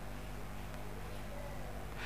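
A pause between spoken phrases: faint, steady room tone with a low hum.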